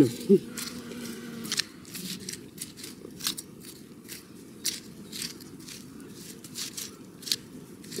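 A small hand garden tool is chopping and scraping through loose, crumbly soil, working fertiliser granules in. It makes irregular gritty crunches and scrapes, several to the second.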